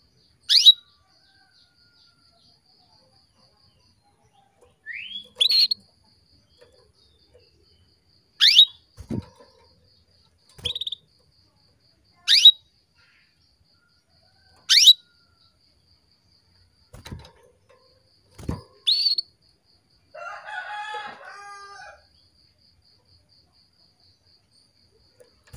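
Caged female canary giving single short, sharp chirp calls that sweep down in pitch, six of them spaced a few seconds apart, calling to male canaries; soft thumps of the bird hopping on its perch fall between the calls. A rooster crows in the background for about two seconds near the end.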